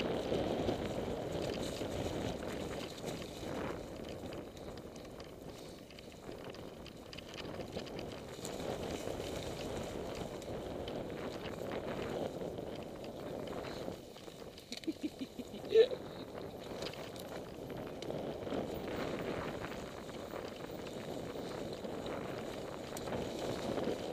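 Mountain bike riding down a leaf-covered dirt trail: a steady rushing of the tyres over dry leaves and soil, with light rattling of the bike. About fifteen seconds in, a few quick clicks are followed by a brief, sharp squeak, the loudest sound in the stretch.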